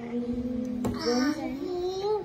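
A young boy singing the words of a Christmas picture book, holding one long steady note, then a short click and a new sung phrase that rises in pitch near the end.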